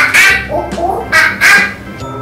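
Monkey calls: about five short, shrill hoots and screeches in quick succession, over background music.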